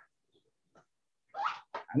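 Dead silence on a video-call line for over a second, then a short breathy sound and a brief clipped sound as someone begins to speak.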